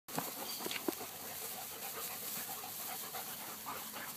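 Young Beauceron dogs panting around the microphone, over a steady outdoor hiss, with a few short knocks in the first second.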